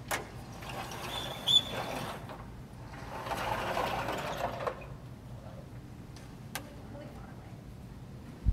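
Clicks and mechanical rattling from the Torah ark being worked, with a brief high squeak about a second and a half in and a second stretch of rattling a little later, then a single click near the end.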